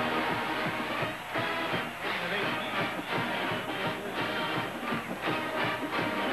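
A band playing in the stadium: pitched horn lines over a steady drum beat.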